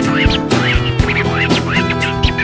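Instrumental passage of a Greek rock song: a steady drum beat and bass under a high lead part that slides up and down in quick, squawking notes.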